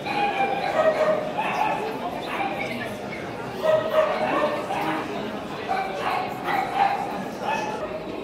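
Small dogs yapping in short, high, repeated barks, over people talking in the background.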